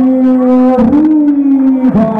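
A boxing ring announcer calling out a fighter's name over the PA in two long drawn-out syllables, each held about a second and sinking slightly in pitch.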